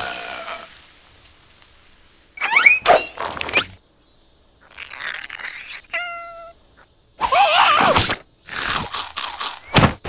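Cartoon character vocalizations and sound effects in a few short bursts: high, squeaky, gliding voice-like sounds, a brief steady squeal about six seconds in, and short pauses between the bursts.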